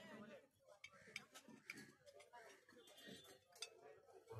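Faint, irregular clinks of spoons against plates, a handful of sharp ticks spread through the few seconds, over a low murmur of diners' voices.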